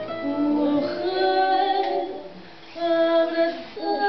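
A woman singing fado, holding long, wavering notes, with a Portuguese guitar and a classical guitar (viola) accompanying her. The voice eases off briefly just past halfway, then comes in on another held note.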